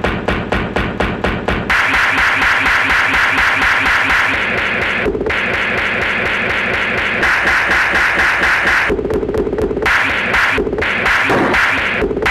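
Music loop chopped from old film soundtrack audio: a short snippet stutters about five times a second at first, then gives way to a dense, pulsing repeated texture broken by a few brief dropouts.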